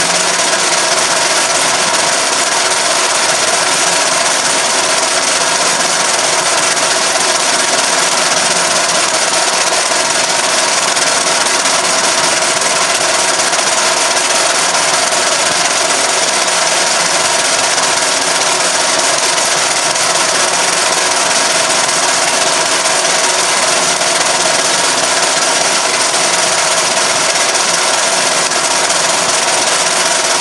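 An old metal-turning lathe running steadily at constant speed while it turns a metal workpiece against the cutting tool.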